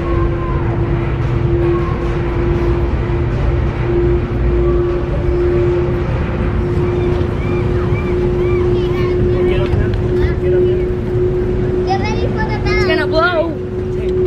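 A car ferry's engines running under way: a steady low rumble with a constant droning hum. High, wavering voices break in over it near the end.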